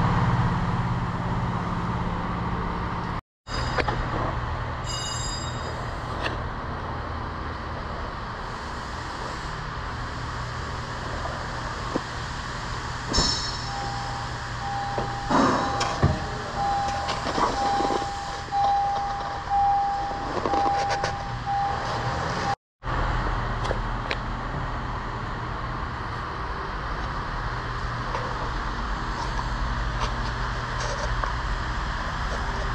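A steady low hum of shop noise runs through several cut-together clips. Through the middle stretch a car's warning chime, of the kind a car gives with the driver's door open, beeps about once a second for some eight seconds, with knocks and rustling handling noise over it.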